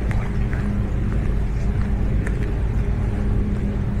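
Outdoor street ambience: a steady low rumble with a few faint, sharp clicks and short high chirps over it.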